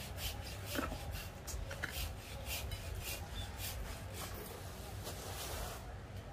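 Faint rubbing and scuffing of hands and body against a bougainvillea stump and its plastic-wrapped root ball as it is handled, a few soft scuffs a second over a low steady rumble.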